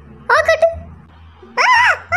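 Two short, high-pitched vocal sounds, like squeals: a brief one near the start and a longer one near the end that rises and falls in pitch.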